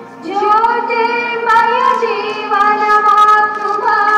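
Dance song with a high singing voice holding long notes and gliding between pitches over a steady drone. There is a short lull at the very start before the voice comes back in.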